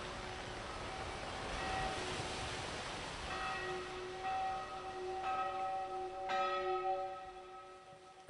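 A series of bell strikes, each note ringing on and overlapping the next, over a steady hiss; the ringing fades out near the end.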